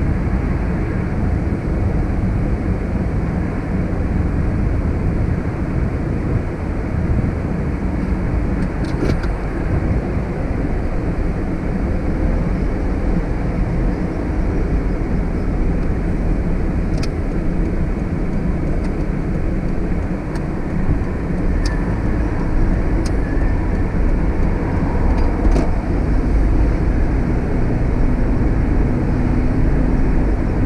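Steady low rumble of a car's engine and road noise, picked up by a camera on the dashboard inside the cabin, with a few faint, irregular clicks.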